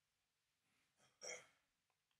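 Near silence, with one faint, short intake of breath about a second in, caught on the speaker's clip-on microphone.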